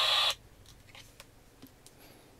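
AudioComm RAD-P2227S pocket AM/FM radio's small speaker playing a hissy broadcast voice that cuts off suddenly about a third of a second in as the radio is switched off. A few faint clicks of the plastic radio being handled follow.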